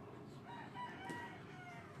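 A rooster crowing faintly: one drawn-out call of about a second and a half that drops in pitch near its end.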